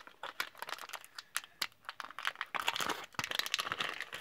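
Foil wrapper of a Pokémon trading card pack being torn open and crinkled by hand: irregular crackling, busiest in the last second or so.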